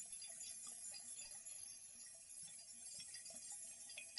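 Faint tinkling of small chimes, a soft musical interlude with many scattered high, bell-like notes.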